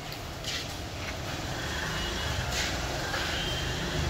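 Plastic wheels of a child's umbrella stroller rolling over a concrete floor, a steady low rumble that grows gradually louder as it approaches.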